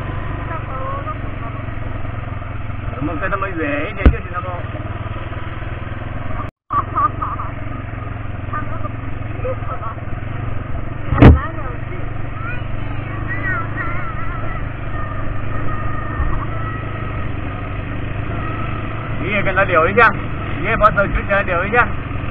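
An ATV engine running steadily under way on a bumpy dirt track, with a couple of sharp knocks from the ride. Voices talk over it now and then, most near the end.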